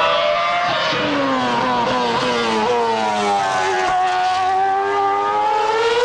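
A Ferrari F10 Formula One car's 2.4-litre V8 engine running at high revs as the car passes. The pitch falls steadily for about four seconds, then rises again as the car accelerates away.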